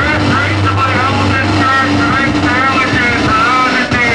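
Live electronic noise music: a loud, steady low drone with higher tones gliding up and down over it.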